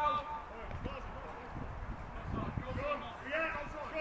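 Faint voices calling out over a steady low wind rumble on the microphone.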